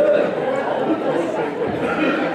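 Several voices talking at once: congregation chatter.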